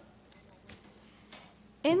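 Quiet room tone with a few faint clicks and a brief high tick, then a girl's voice starts speaking near the end.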